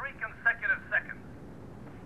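A man's voice heard through a telephone line, thin and narrow-sounding, talking briefly and stopping about a second in.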